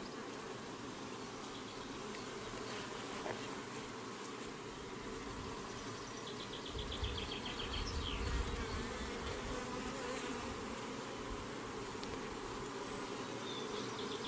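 Honeybees buzzing steadily around an open hive and a comb frame covered in bees. A few low bumps come about halfway through, as the wooden frame is handled.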